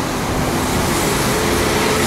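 Steady road traffic noise with the faint hum of a passing vehicle's engine.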